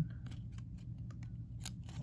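Cardboard trading cards being shuffled by hand: card stock sliding and flicking against card stock in a series of short scrapes and clicks, with a sharper flick near the end.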